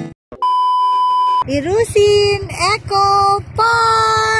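The background music cuts out and a single steady electronic beep sounds for about a second. Then a high-pitched voice follows in drawn-out, rising and held syllables, an edited-in sound effect at a scene change.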